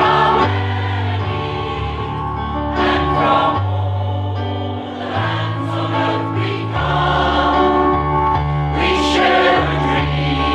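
Mixed choir of men's and women's voices singing a song in harmony, with long held bass notes that shift every second or so underneath.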